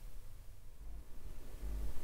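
Quiet room tone: a steady low hum with faint hiss.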